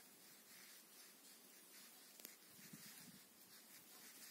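Near silence: faint rustling of cotton yarn and a crochet hook being worked by hand, with one small click about two seconds in.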